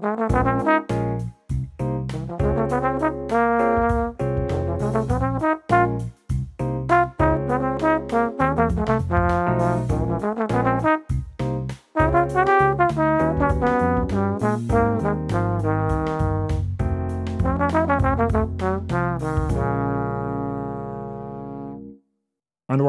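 Bach 36 tenor trombone playing an improvised jazz chorus of quick, separately tongued lines that stay mostly in A-flat and resolve to chord tones. It has a few short breath breaks and ends on one long held note that fades out.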